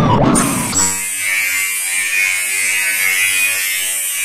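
Digitally distorted effects-edit audio: after a brief louder passage, a steady electronic buzzing drone with many evenly spaced overtones and a hiss over it sets in under a second in.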